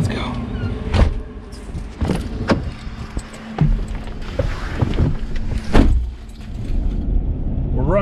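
A few sharp knocks and clicks from doors and keys, then a pickup truck's engine running low from about halfway through, with one loud knock just before six seconds in.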